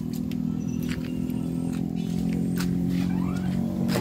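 An engine running steadily, a low even hum with a few faint clicks over it.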